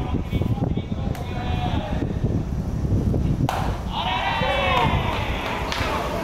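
Voices calling out across a baseball ground, with a loud, drawn-out wavering shout starting about three and a half seconds in. A steady low rumble runs underneath.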